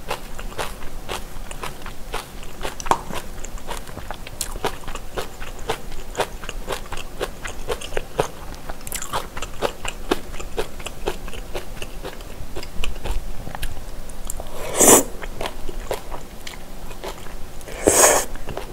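Close-miked eating: wet chewing and biting of boneless chicken feet and glass noodles in spicy broth, a steady stream of small irregular clicks and smacks. Two louder, breathy bursts come near the end, about three seconds apart.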